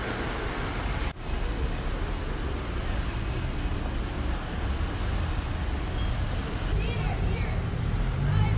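City street ambience: steady traffic noise with a low rumble. It changes abruptly about a second in, and faint voices come in near the end.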